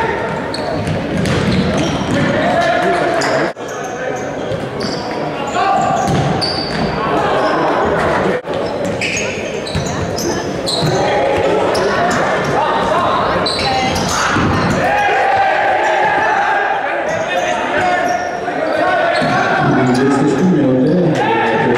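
Indoor football game on a hard sports-hall floor: the ball being kicked and bouncing, short high shoe squeaks, and players and spectators calling out, all echoing in the hall.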